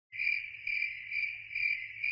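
Crickets chirping in a steady high trill that swells about twice a second, over a low steady hum.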